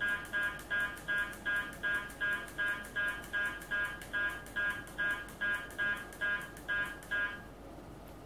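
Uniden R7 radar detector sounding a short electronic beep for each step as its K-band segment limit is scrolled in the menu. The beeps come in a regular series of about two and a half a second and stop about seven seconds in.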